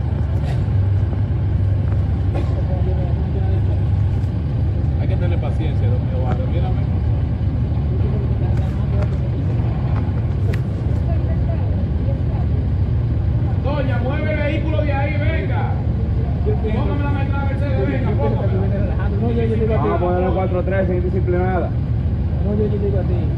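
Steady low rumble of a car engine running close by, with voices talking in short bursts a few times in the second half.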